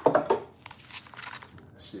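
Handling noise from the recording device being repositioned: hands rubbing and scraping against it close to its microphone. The scuffing is loudest in the first half second, then quieter rustling.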